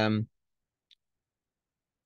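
A man's speaking voice finishing a word, then silence broken only by one faint, very short click about a second in.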